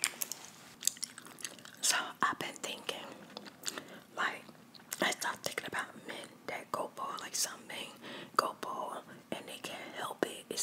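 Soft whispering close to the microphone, coming in short phrases and broken by many sharp clicks.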